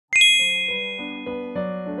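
A bright chime sound effect strikes just after the start and rings down slowly, while a light, plinking keyboard-style melody of background music starts up under it.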